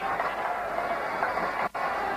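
Stadium crowd noise, a steady roar and cheering, that cuts out for an instant near the end.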